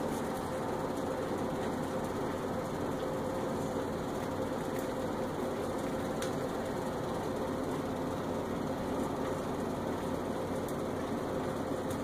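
Steady, unchanging mechanical hum, like a fan or appliance motor running, with a faint held tone in it.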